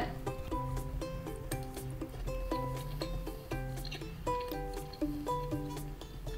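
Background music: a light, gentle tune of short plucked notes stepping up and down in pitch.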